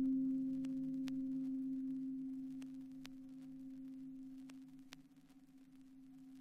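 A single low, steady electronic tone from a hip-hop instrumental, held and slowly fading away, with a few faint clicks.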